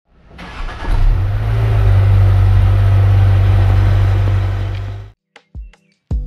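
Renault Captur's engine starting and running steadily, heard from inside the cabin; the sound builds over the first second and stops abruptly about five seconds in, followed by a few faint clicks.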